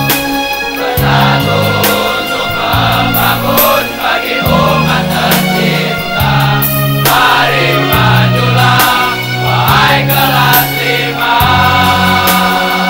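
A large all-male choir singing, its low sustained notes shifting every second or so, with sharp percussive hits through the song.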